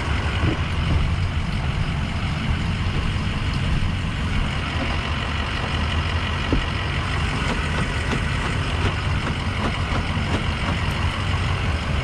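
Ford F-350's 6.0 turbo-diesel V8 idling steadily.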